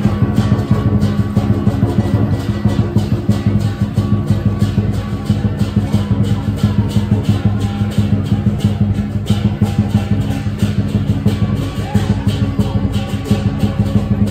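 Lion dance percussion: a large drum with clashing cymbals beating a fast, even rhythm of about four to five strokes a second.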